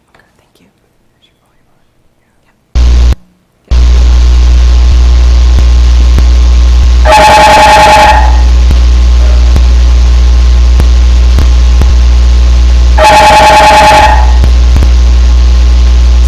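Recording from the microphone in LIGO Hanford's pre-stabilized laser enclosure, played back over loudspeakers. It starts about three seconds in as a loud steady hum, with two bursts of ringing tones about six seconds apart. The bursts are laser glitches: acoustic noise that also shows up in the gravitational-wave strain data.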